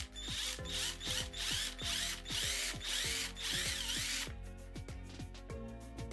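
Cordless drill with a 3 mm bit drilling a hole through the wall of a plastic enclosure, stopping about four seconds in.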